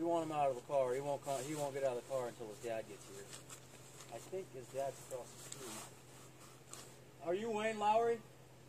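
A person's voice talking in short phrases, unclear words, over a steady low hum.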